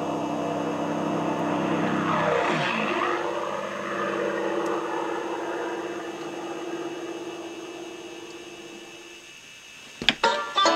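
A recorded sound-effect sample played back by the computer when the laser tripwire beam is broken: an engine-like drone with a sweeping pitch pass about two and a half seconds in, like an aircraft or vehicle going by. A steady hum follows and fades away near the end.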